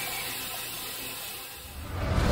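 Steady hiss of amplified static-camera audio, with a faint, thin, high-pitched scream trailing off in the first moments, which one host takes for a fox screaming.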